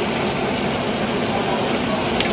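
Steady rushing background noise, even throughout, with no distinct knocks or tones.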